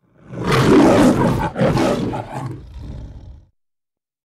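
The MGM logo's lion roar: a lion roaring twice. The first roar is the loudest; the second comes after a short break at about a second and a half and trails off well before the end.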